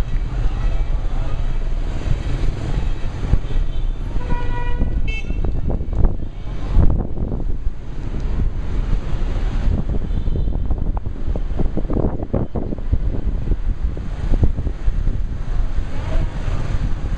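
City street traffic heard from inside a taxi: a steady low rumble of engines and road noise with motor scooters passing close by. A horn sounds briefly a little after four seconds in.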